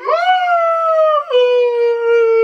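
A man's drawn-out, high falsetto howl, 'Ooooh', held as one long note that drops a step in pitch about halfway through.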